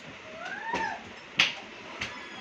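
A single short animal call, like a cat's meow, that rises and then falls in pitch, followed by a sharp click about a second and a half in.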